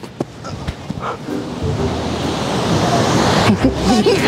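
A steady outdoor rushing noise that swells over the first few seconds, with a few faint knocks near the start.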